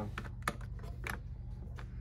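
Grey plastic vice-style pole clamp on a TXP5 ventilator being turned and opened by hand: a run of irregular light clicks, over a steady low hum.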